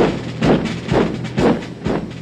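Soundtrack music: a steady, military-style drumbeat at about two strikes a second over a low sustained drone.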